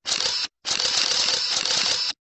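Sound effect of a 'subscribe' end-screen animation: a short half-second burst, then after a brief gap a longer burst of about a second and a half, both high, hissing and shimmering.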